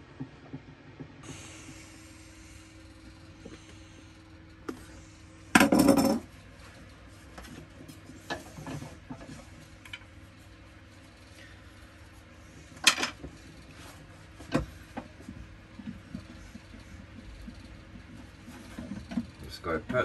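Thin wooden spindle strips handled on a workbench: scattered light clicks and knocks of wood on wood and on the bench, with one loud clatter about six seconds in and a sharp knock near thirteen seconds.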